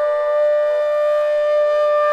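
Flute holding one long, steady note in a slow melody.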